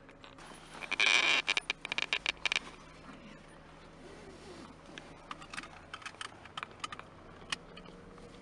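A burst of rapid rattling clicks about a second in, lasting about two seconds, then scattered fainter clicks over a low steady hum.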